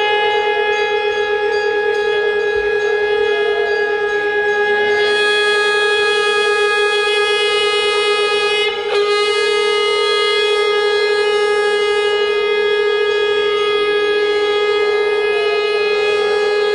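Conch shell (shankh) blown in a long, steady note, as the ritual call of the Hindu aarti. The note breaks off briefly about nine seconds in and then sounds again.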